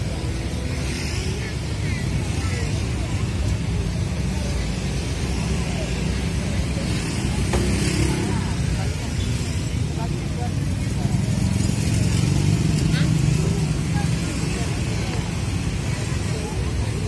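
Steady low rumble of roadside street ambience with vehicle noise, with faint voices in the background.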